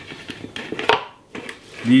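Hands picking lettuce leaves out of a plastic salad spinner basket: soft rustling and light plastic clicks, with one sharper click about a second in.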